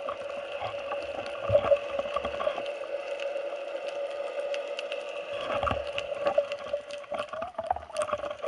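Underwater sound near the surface, heard through a camera's waterproof housing: water sloshing and small knocks and thumps as the diver moves, over a steady high hum. The knocks fall quieter in the middle and pick up again after about five seconds.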